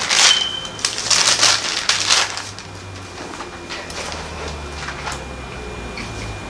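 Bible pages being turned and leafed through: a run of paper rustles and flips for the first two and a half seconds, then softer, occasional rustles.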